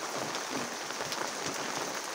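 Steady rain falling: an even hiss with scattered faint ticks of drops.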